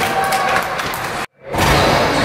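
Ice rink game noise, skates and sticks on the ice with the arena's echo, broken by an abrupt drop to silence a little over a second in, where the recording is cut, then resuming louder.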